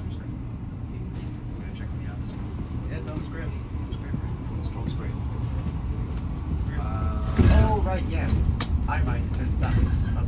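Cabin noise inside an Alexander Dennis Enviro400 EV battery-electric double-decker bus on the move: a steady low road and running rumble. Voices come in over it about seven seconds in.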